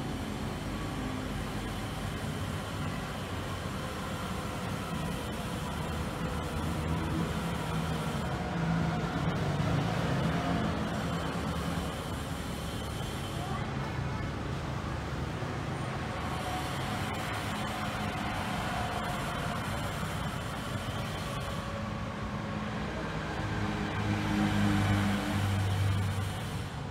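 Street traffic: a steady rumble of vehicles passing, swelling with a louder pass about ten seconds in and again near the end.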